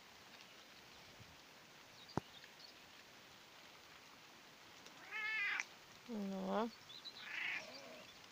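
British Shorthair cat meowing twice in quick succession: a higher call about five seconds in, then a lower, dipping one just after. A single sharp click comes about two seconds in.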